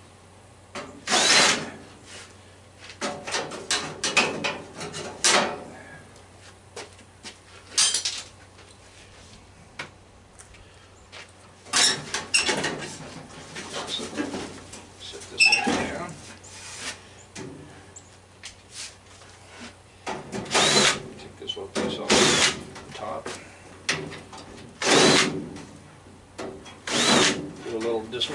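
A cordless drill running in a series of short bursts, each about half a second to a second long, with gaps between, as it backs screws out of a furnace's sheet-metal cabinet.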